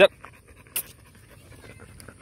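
American Bully dog panting softly on a walk, with a short sharp noise about three quarters of a second in.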